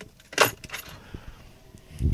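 Small metal objects jingling: one brief jangle about half a second in, then a few faint clinks.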